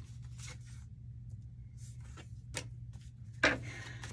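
Tarot cards being handled and shuffled: soft rubbing and sliding of card stock with a few light flicks, and a stronger brush near the end as a card comes out of the deck.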